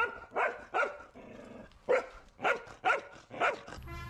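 A dog barking: about seven short barks, a quick run of three and then a run of four.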